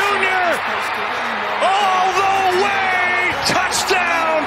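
Television play-by-play announcer calling a long touchdown run in excited, drawn-out shouts, over a steady background of crowd noise.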